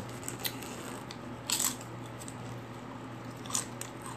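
A person chewing a crunchy snack close to the microphone: a few crisp crunches, the loudest about a second and a half in.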